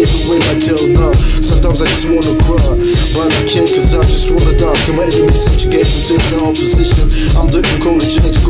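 Hip hop track: a steady drum beat under a repeating melodic line, with a rapped vocal over it.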